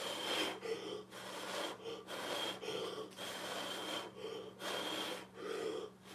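A person blowing hard by mouth onto wet acrylic paint on a canvas, a run of short rushing puffs of breath about one a second. This is the blow-out stage of an acrylic pour, pushing the white paint out into wispy, smoky edges before the swipe.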